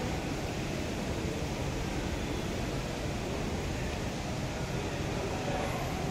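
Steady indoor background noise: an even, low hum like a shopping centre's air conditioning, with no distinct events.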